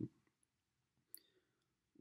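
Near silence with room tone and one brief, faint click a little past halfway.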